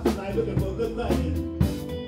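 Live band playing electric guitar and keyboard over a steady beat, about two hits a second.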